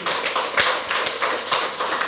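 Audience clapping in a hall: a dense, uneven patter of many hands that starts suddenly and runs on at a steady level.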